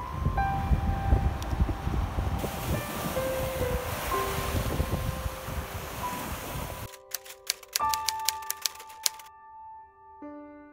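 Small waves washing up onto a sand beach, a steady noisy rush, with soft piano music over it. About seven seconds in the surf cuts off suddenly, leaving the piano and a quick run of sharp clicks.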